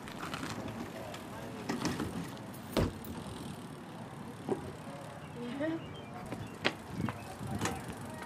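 Skate-park ambience: distant children's voices over a steady outdoor background, broken by a few sharp knocks, the loudest about three seconds in.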